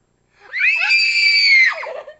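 A person's high-pitched scream that starts about half a second in, holds steady for about a second, then drops in pitch and breaks off.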